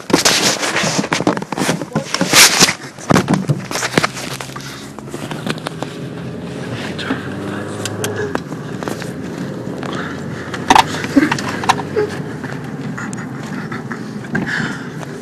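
A quick run of knocks, scrapes and handling bumps as people scramble into a car. Then the car's engine runs with a steady low hum, with a few more knocks about eleven seconds in.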